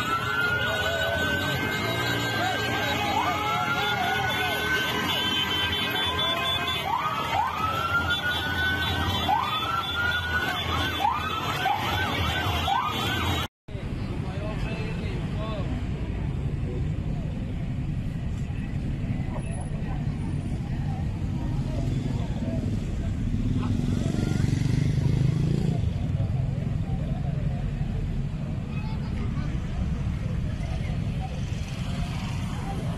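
Several sirens whooping over one another, each call a quick rise in pitch, above the low rumble of motorcycle and car engines in a slow motorcade. About thirteen seconds in the sound cuts off abruptly and gives way to a steady din of crowd voices and street traffic.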